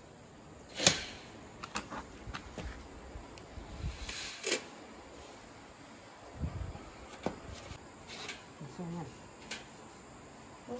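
Dried osmanthus flowers rustling as hands stir and scoop them in a stainless steel tray, with scattered light clicks and taps and one sharp click about a second in.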